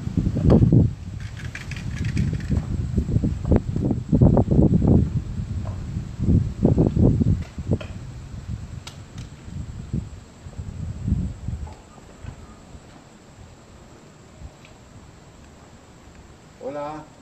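Irregular low rumbles and thumps of handling noise on a handheld camera's microphone as it is carried and moved, with a few light knocks. The noise dies away after about twelve seconds.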